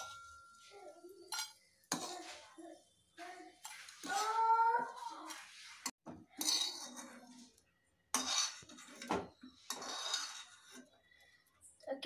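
Steel spoon scraping and clinking against a frying pan and a steel plate as fried bread pieces are stirred and scooped out, in a series of separate short scrapes and clinks.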